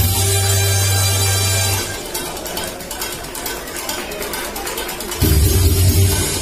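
Live harmonica playing a melody over a backing track with a heavy bass line. The bass drops out about two seconds in, leaving a lighter beat, and comes back strongly near the end.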